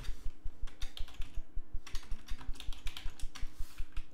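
Typing on a computer keyboard: a rapid run of keystrokes as a word is deleted and retyped.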